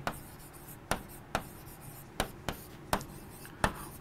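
Marker pen writing on a board: faint scratchy strokes broken by about six short taps as letters are put down.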